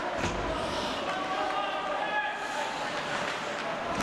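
A thud as ice hockey players collide against the rink boards at the start, followed by a steady din of voices echoing in the arena.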